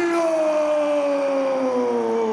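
A man's long celebratory yell after winning a fight: one held shout whose pitch slowly falls.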